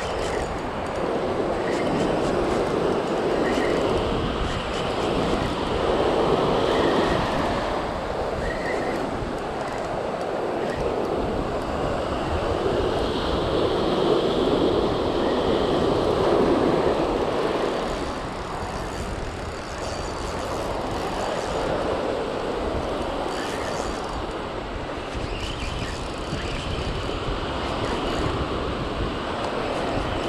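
Ocean surf breaking and washing up the beach, with wind on the microphone: a steady rushing noise that swells and eases every several seconds.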